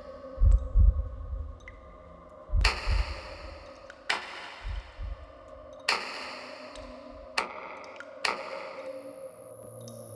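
Horror film underscore: a sustained drone under low heartbeat-like double thuds in the first half and five sharp hits that ring out. A thin high whine enters near the end.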